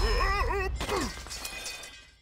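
Action sound effects from an animated fantasy trailer: a wavering, warbling cry followed by a short falling glide, over crashing and shattering noise, fading away near the end.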